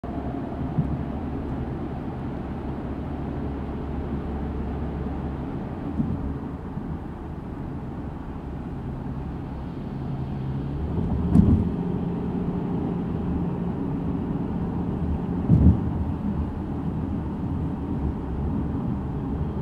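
A car driving along a road: a steady low rumble of engine and tyre noise, with its low hum shifting slightly twice. A few short thumps come through, the clearest about eleven and fifteen seconds in.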